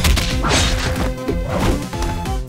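Cartoon fight sound effects: a quick run of hits and swishes, several sudden strikes in two seconds, over background music.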